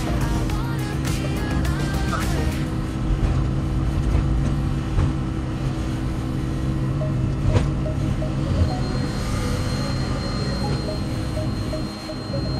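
DEVELON wheeled excavator's diesel engine running steadily, heard from inside the cab, with music playing over it. There is a single sharp knock about seven and a half seconds in.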